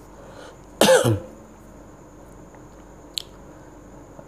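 A man gives one short cough to clear his throat, about a second in. A faint click follows near the end.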